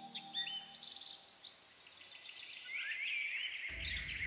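Small birds chirping: a run of short, quick chirps, then a few looping up-and-down calls, while the last of the music dies away in the first second. A low background rumble comes in near the end.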